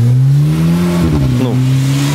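A motor vehicle's engine revving, its pitch rising for about a second, then dropping and holding steady.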